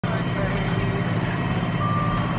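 Case IH Magnum tractor's diesel engine running steadily under load, heard from inside the cab while it pulls a chisel plow through the field.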